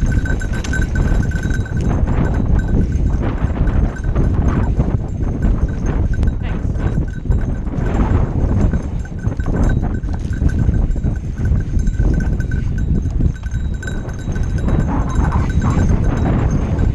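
Mountain bike descending a dry dirt singletrack: tyres rolling and crunching over the rough trail while the bike rattles and clatters, with continuous wind rumble on the helmet-camera microphone.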